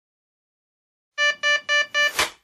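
Digital alarm clock beeping: short, evenly spaced electronic beeps about four a second, starting about a second in.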